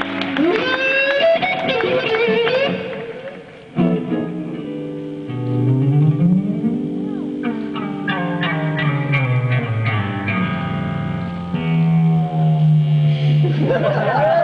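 Electric guitar played live through an amplifier: solo lead lines with bent, gliding notes and long held notes, dropping out briefly near four seconds before picking up again.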